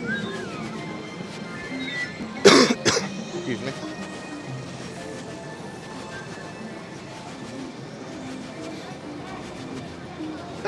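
A person coughs twice, loud and close, about two and a half seconds in, over steady background music.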